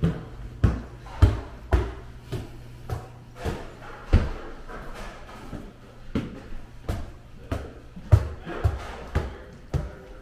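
Footsteps climbing wooden stairs: a steady run of dull thumps, about two steps a second.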